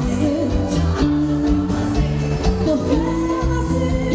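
Brazilian pop band playing live, a woman singing lead over bass, keyboards and drums with a steady beat.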